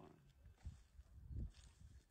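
Near silence in a pause between words, with two faint low bumps about a second apart.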